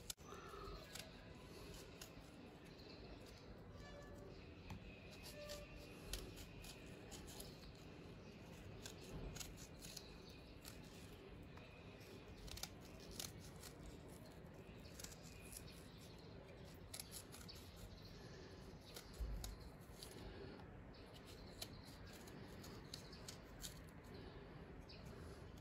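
Faint, irregular clicks and scrapes of a small carving knife cutting thin petals into a raw radish.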